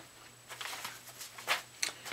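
Soft rustling with a few light clicks and knocks of things being handled and moved about on a tabletop while someone searches for a misplaced item, with a sharper click about halfway through and another near the end.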